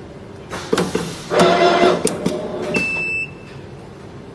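PTFE tape winding machine running one wrapping cycle on a pipe thread: a few clicks, then a brief motor whir as the head spins tape onto the thread, more clicks, and a short high-pitched tone about three seconds in as the cycle ends.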